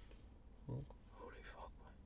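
Near silence with one short, quiet voiced sound from a man just before a second in, followed by faint whispered murmuring.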